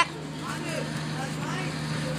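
A steady low motor hum, with faint distant voices underneath.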